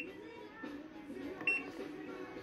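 Top-loading washing machine's control panel giving short high beeps as its program button is pressed, once at the start and again about a second and a half in.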